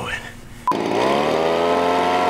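A short electronic beep, then a small gas engine, as on a leaf blower, comes in loud, rising quickly in pitch and then running steadily at high speed.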